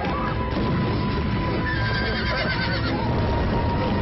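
A horse whinnies, a wavering call that falls in pitch about two seconds in, over film music and continuous low rumbling noise.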